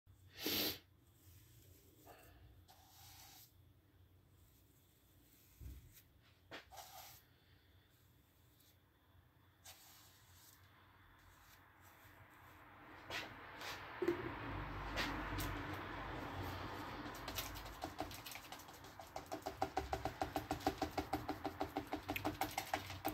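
A few faint knocks and handling sounds, then, from a little past halfway, a round brush scrubbing and dabbing thick acrylic paint onto paper. The strokes quicken into a rapid scratchy rhythm of about three a second, growing louder toward the end.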